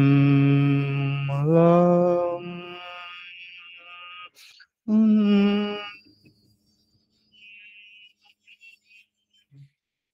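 A man humming into a microphone, part of a group humming the notes of a C major chord. He holds a low note, slides up to a higher one about a second in and lets it fade, then hums a second short note about five seconds in.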